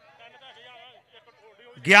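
Speech only: a faint man's voice, then a loud male commentator's voice starting just before the end.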